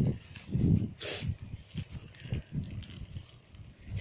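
Wind buffeting the phone's microphone in uneven low gusts, with a few faint knocks between them.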